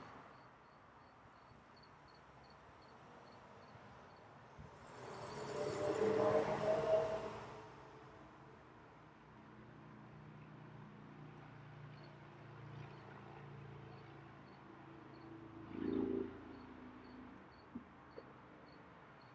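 A vehicle passes, swelling and fading over about three seconds, with a shorter, softer swell near the end. Under it, a cricket chirps steadily about four times a second.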